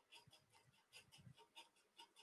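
Near silence, with faint, rapid, irregular clicking.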